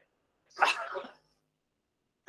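A single short, loud burst of breath from a person, like a sneeze, about half a second in.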